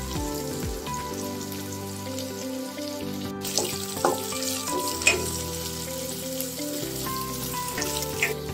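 Sliced shallots, green chillies and curry leaves sizzling in hot oil in a stainless steel pan, with a few sharp clicks of the spatula against the pan in the middle as they are stirred.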